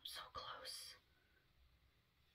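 A brief whispered mutter: two short breathy syllables within the first second.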